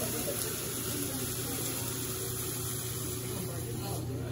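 Steady hiss of a tall flambé flame and sizzling on a hibachi griddle, under a steady low hum.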